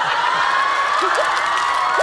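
Live studio audience laughing and shrieking, many high voices at once, loud and sustained.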